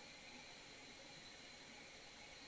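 Near silence: faint steady hiss of the recording's background noise.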